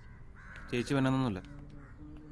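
A man speaking, with a bird calling behind him about half a second in.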